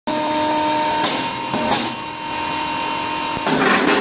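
Hookah charcoal briquette press machine running with a steady hum, with louder noisy bursts about a second in, again shortly after, and a longer one near the end.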